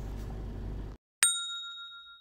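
Low steady car-cabin rumble that cuts off about a second in. It is followed by a single bright chime, a notification-bell sound effect, that rings on and fades away.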